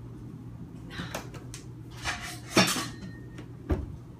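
Kitchenware clattering as a plastic food container is pulled from a crowded dish rack and handled: a few rattles and scrapes, the loudest about two and a half seconds in, then a sharp knock near the end.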